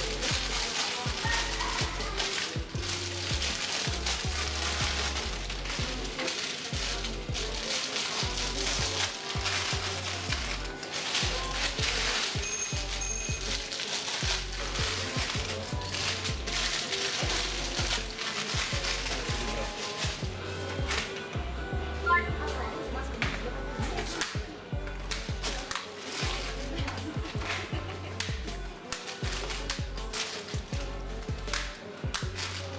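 Plastic-wrapped sweets and packets rustling, crinkling and knocking together as they are dropped by hand into a black plastic bin bag, over steady background music.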